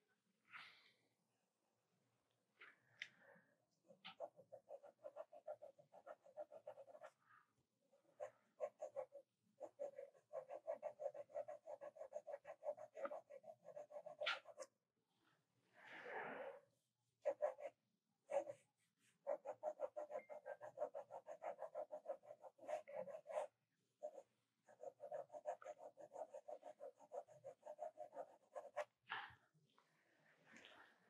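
Pencil shading on paper: rapid back-and-forth hatching strokes in runs of a few seconds each, with short pauses between, as tone is laid into a figure drawing.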